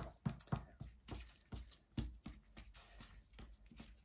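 Wooden craft stick stirring thick acrylic paint and pouring medium in a plastic cup, scraping and knocking against the cup's sides and bottom in a string of irregular soft clicks.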